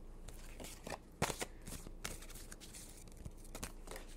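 A deck of oracle cards being shuffled by hand: a scattering of short clicks and snaps from the cards, the loudest about a second in.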